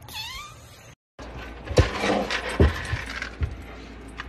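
A long-haired white cat meowing: one short call that dips and then rises in pitch, lasting under a second. After an abrupt cut it is followed by three dull thumps about a second apart.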